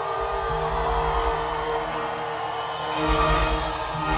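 Live band playing an instrumental passage with sustained keyboard chords; the bass and low end drop back, then the full band comes back in louder about three seconds in.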